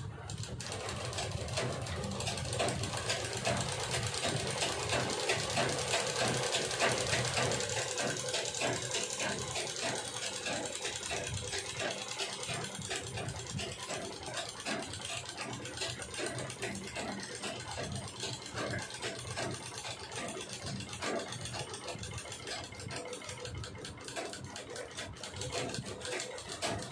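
Sewing machine running steadily, its needle stitching through fabric in a rapid, even clatter.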